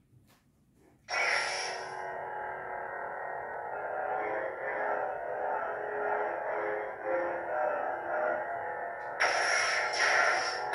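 Lightsaber replica's Golden Harvest v3 soundboard: after a couple of faint clicks, the ignition sound starts suddenly about a second in and settles into a steady electronic hum that wavers as the blade is moved. A louder burst comes near the end.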